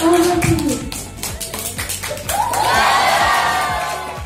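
Audience clapping in irregular, scattered claps, with cheering voices rising in the second half, over background music.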